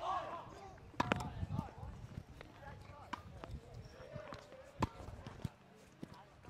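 Tennis ball struck by a racket and bouncing on a hard court: a sharp pop about a second in, then two lighter pops near the end, with faint voices behind.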